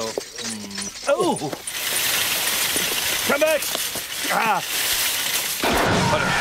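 Short wordless cartoon vocal exclamations, a few brief rising-and-falling sounds, over a steady rattling noise that runs through the middle and stops shortly before the end.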